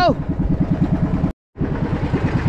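Engine of a motorized outrigger boat running steadily at cruising speed, a rapid even pulsing beat. The sound drops out for a moment about a second and a half in, then the engine resumes.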